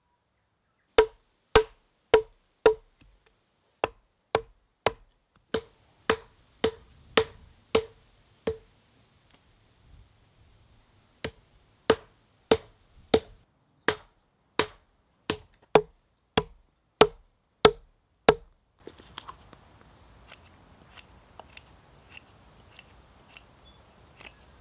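Carved wooden mallet driving a round wooden leg into an augered hole in a cedar log: sharp, ringing wood-on-wood knocks about two a second, with a pause of a few seconds midway. The knocks stop near the end and give way to faint scraping of a knife shaving the end of the next leg.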